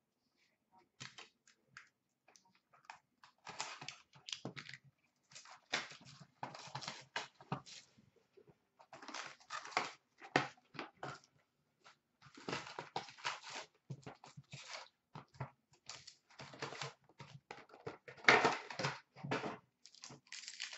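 A sealed hockey card box being unwrapped and opened by hand, and its foil packs pulled out and handled: a string of irregular crinkling, tearing and rustling bursts. The loudest bursts come near the end.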